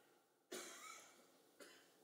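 A single short, soft cough about half a second in, fading away in under a second, followed by a faint click.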